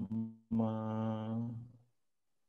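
A man's voice holding a long, level-pitched hesitation syllable, a drawn-out 'me…', that fades out near the end.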